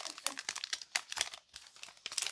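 Foil wrapper of a Pokémon card booster pack crinkling in the hands as it is torn open and the cards are pulled out, in quick irregular crackles that ease off near the end.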